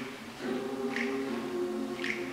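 Mixed choir of men's and women's voices singing a cappella, holding sustained chords; the sound dips briefly about half a second in before a new chord comes in, with a sung 's' hiss near the middle.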